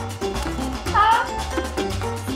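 Cartoon background music with a steady bass beat; about a second in, a short rising, meow-like squeak from the cartoon seal.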